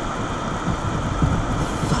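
Road and tyre rumble inside a moving Citroen car's cabin, with a few low thumps in the second half.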